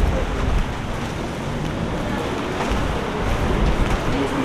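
Wind buffeting the microphone as a steady low rumble, over street traffic noise.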